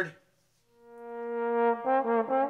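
Solo trombone playing a long held note that swells in slowly from nothing, then moving on to other notes near the end as a melodic phrase begins.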